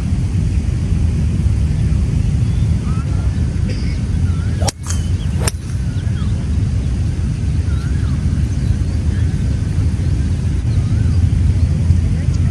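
Outdoor ambience on a golf driving range: a steady low rumble with birds chirping faintly, and two sharp clicks about a second apart near the middle.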